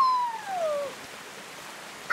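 Shallow river water rushing steadily over rock slabs. At the start, one high cry slides down in pitch over about a second.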